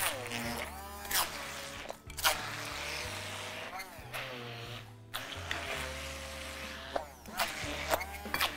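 Handheld immersion blender running in a glass bowl of cottage cheese and sugar, its motor whine dipping and recovering several times as the blade works into the thick curd, blending it smooth. Background music with a steady bass plays underneath.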